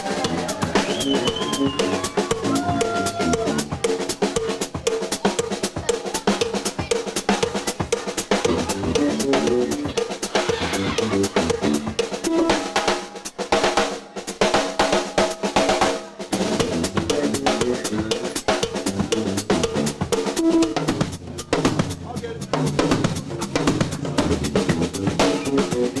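Live blues-rock band playing, with the drum kit to the fore: snare, bass drum and cymbals drive a busy beat over electric guitar and bass. The low end drops away for a couple of seconds about halfway through.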